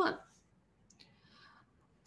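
Pen writing on paper, faint: a light tap as the tip touches down about a second in, then a short scratch of strokes lasting about half a second.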